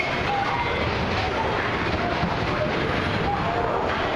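Steady outdoor theme-park ambience: a continuous wash of noise with faint, indistinct voices in it.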